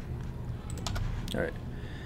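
A few sharp computer keyboard and mouse clicks in quick succession about halfway through, as a key press deletes a drawn shape, over a low steady hum.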